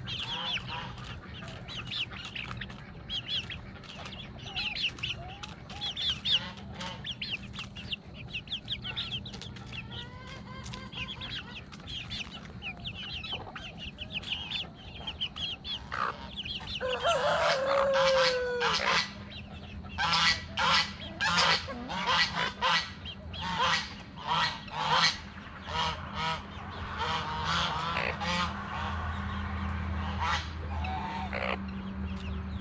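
Backyard chickens clucking and young birds peeping in quick high chirps. About halfway through a long call comes, then geese honking loudly and repeatedly, about twice a second.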